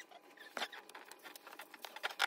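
Faint handling sounds of paper sublimation transfer sheets being laid out on a blanket: a single light tap about half a second in, then a quick run of small taps and rustles near the end as fingers press the sheets down.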